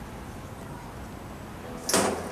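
Steady background hiss, then a short, loud whoosh of noise near the end.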